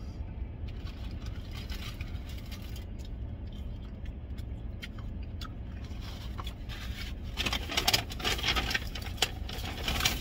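Paper food wrapper crinkling and rustling as it is handled, a few soft rustles at first, then loud, dense crackling from about seven seconds in, over a steady low rumble inside the truck cab.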